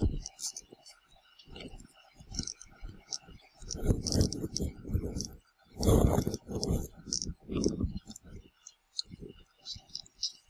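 A stiff new leather watch strap and its metal buckle being worked on the wrist: an irregular run of short clicks and rubbing noises as the strap end is pulled through the buckle and keeper.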